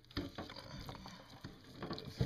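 Handling noise: light knocks and rustles as a bowl of marinated pork is moved, with a sharper knock shortly after the start and another near the end.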